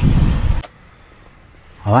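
Wind buffeting the microphone, a loud rumbling hiss that cuts off abruptly about half a second in, leaving faint outdoor background noise. A man's voice starts near the end.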